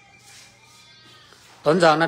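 A man's voice: a short pause holding only a faint, thin wavering tone, then he starts speaking again near the end.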